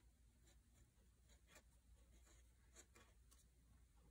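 Faint scratching of a black felt-tip pen writing letters on lined paper, in many short separate strokes.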